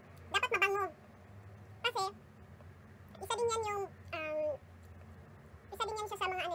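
A cat meowing four times, the calls drawn out and falling in pitch.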